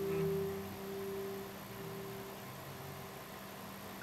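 Acoustic guitar music ending: the last strummed chord rings on and fades away over the first two seconds or so, leaving only a faint steady hum.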